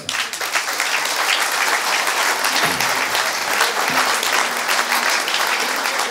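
Audience applause: many people clapping, breaking out as the speech ends and holding steady.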